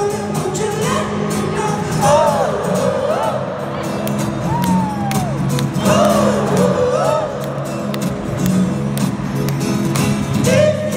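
Live stadium concert: a solo singer's voice gliding through long sung notes over steady held chords, with crowd noise underneath.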